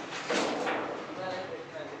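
Indistinct voices talking over a steady background of workshop noise.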